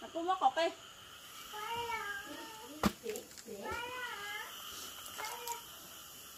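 A cat meowing: two long, wavering meows about two and four seconds in, then a shorter one near the end. A sharp knock falls between the first two.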